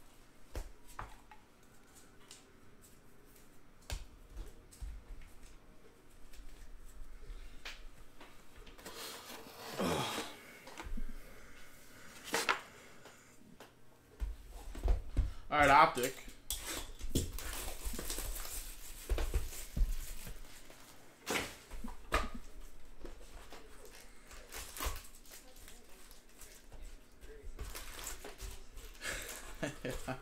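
Trading cards and a shrink-wrapped cardboard box of card packs being handled on a table: scattered taps and clicks, with a stretch of plastic wrapper crinkling about halfway through.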